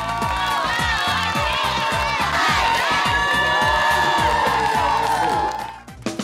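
Dance music with a steady beat of about four drum strokes a second, with a theatre audience cheering and whooping over it. Both fade out near the end.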